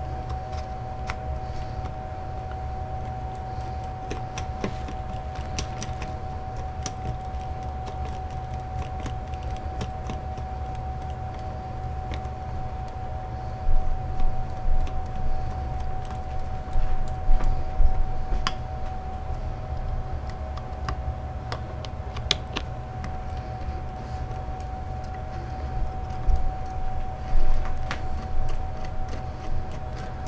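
Small metallic clicks and rattles of an Allen wrench turning the AR-15 pistol grip screw as the grip is tightened back onto the lower receiver. The clicks come thicker and louder in a cluster about halfway through and again near the end, over a steady hum.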